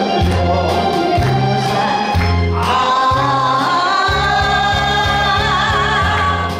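Live Korean trot song. A woman sings into a handheld microphone over electronic keyboard accompaniment with a pulsing bass line. After a short instrumental phrase, her voice comes in about halfway through and holds long notes with a wide vibrato.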